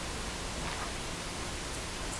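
Steady, even hiss of room tone with no distinct sound.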